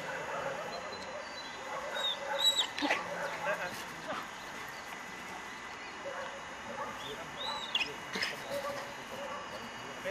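German Shepherd Dog whining, short high-pitched whines that rise and fall, in a cluster about two seconds in and another near eight seconds.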